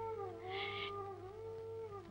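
Quiet background film score: a held melodic line that dips slowly in pitch and rises again, with a short soft hiss about half a second in.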